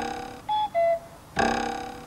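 Cuckoo-clock sound effect: a ringing struck note fades away, then a two-note falling 'cuck-oo' call, then the ringing note strikes again about a second and a half in. It serves as a comic cue for 'crazy'.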